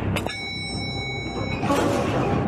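Sound effect of an elevator arriving: a click, then a bell-like ding held for about a second that cuts off, then a short rushing noise near the end, over a low rumbling music bed.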